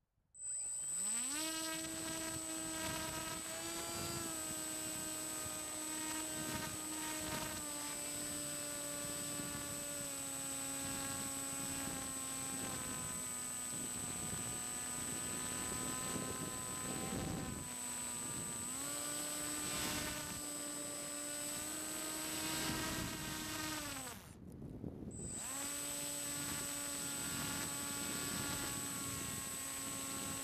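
A Bixler 3's electric motor and propeller, heard close up from a camera on the airframe. The motor spools up quickly about half a second in, then runs steadily with small pitch shifts as the throttle changes: it dips briefly just before 18 seconds and falls away near 24 seconds before running steady again. A thin, high, steady whine sits over the motor throughout.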